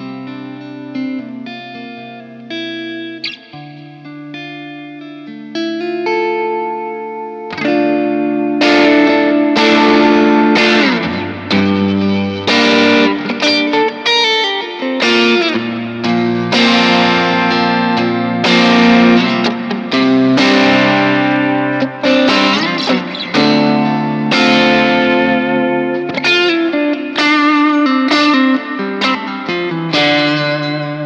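Electric guitar played through a Crowther Hot Cake overdrive pedal, showing off its touch sensitivity: soft, sparse notes for the first several seconds, then harder-picked, louder strummed chords from about seven and a half seconds in, with more drive coming through as the picking gets stronger.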